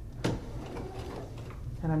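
A single sharp click at the sewing machine about a quarter second in, over a low steady hum, as the work is set up under the presser foot before stitching begins.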